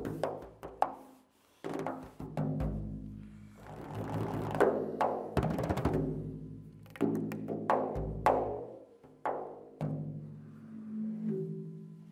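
Persian daf (large frame drum) played with the fingers in tombak technique: separate ringing strokes, two deep booming bass strokes, and a quick flurry of finger strokes midway. The strokes die away just before the end.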